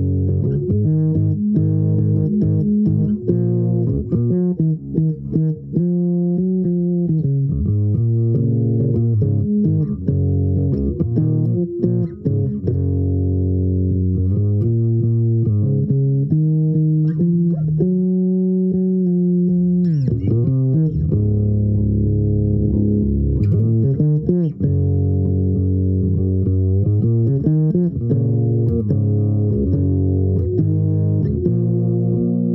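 Solo electric bass guitar played with the fingers, improvising: a continuous run of sustained, overlapping plucked notes. About twenty seconds in the pitch slides down and back up.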